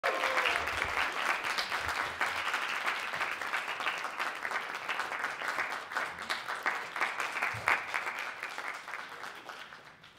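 Audience applauding, the clapping steady at first and dying away over the last few seconds.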